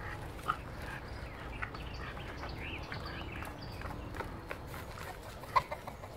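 Chickens clucking and small birds chirping in a farmyard, short scattered calls, with a few sharp knocks; the loudest knock comes near the end.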